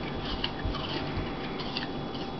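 A puppy crunching pieces of apple: irregular crisp clicks and crackles, with a few soft thumps.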